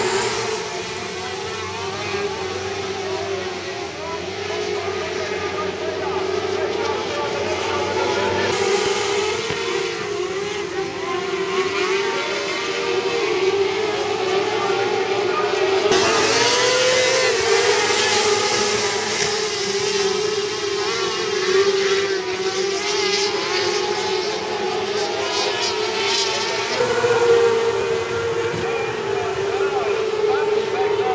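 A pack of Formula 500 winged sprint cars racing on a dirt speedway, their 500cc single-cylinder engines making a continuous drone that wavers up and down as they lap. The sound grows brighter and louder about eight seconds in and again halfway through as the field comes nearer.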